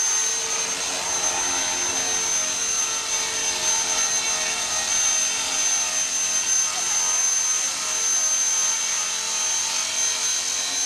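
Blade 400 3D electric RC helicopter hovering low, its motor and rotors giving a steady high whine over the whir of the blades.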